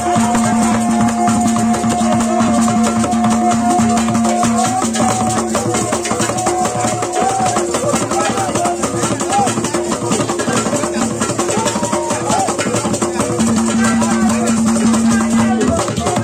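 Hand drums and rattles playing a fast, dense rhythm, with long held notes running over it in places and voices in the middle.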